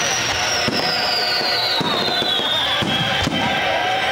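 Fireworks display: several shells bursting in quick succession, with a high whistle gliding down in pitch over about three seconds.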